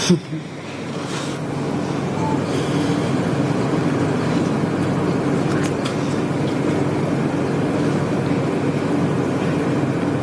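A steady low hum and rumble that builds over the first couple of seconds and then holds even.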